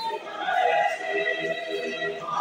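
Choir singing unaccompanied, several voices holding sustained notes together.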